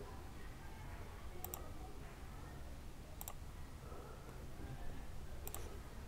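Computer mouse button clicked three times, each click a quick press-and-release pair, faint over a low steady hum.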